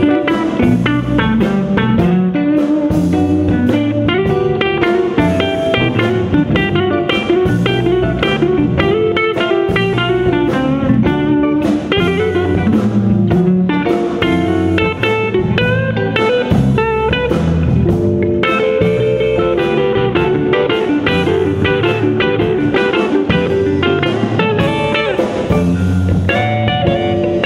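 Blues band playing live, with a hollow-body electric guitar taking the lead in quick runs of short single notes over the rest of the band.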